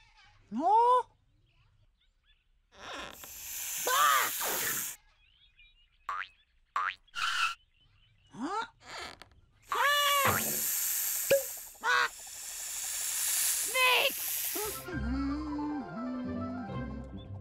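Cartoon sound effects: short squawk-like calls from a cartoon parrot, rising and falling in pitch, broken by two long hissing stretches and a few clicks. Music starts near the end as the egg opens.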